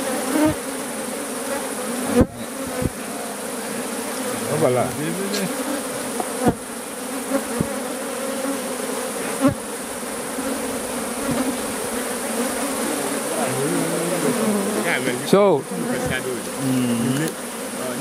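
A colony of honeybees buzzing steadily over the open combs of a top-bar hive, with a few sharp knocks along the way.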